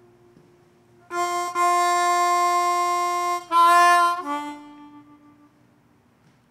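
Solo harmonica playing slow blues. After a brief pause, one long note is held for about two seconds, then a louder short phrase, then a lower note fades out.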